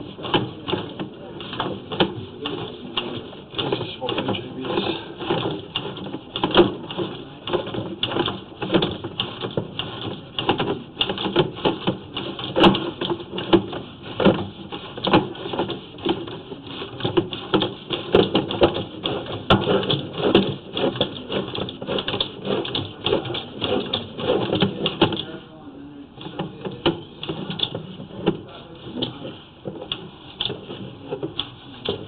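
Sewer inspection camera being pushed along a drain pipe, its push rod and camera head making rapid, irregular clattering and knocking that eases off a little near the end.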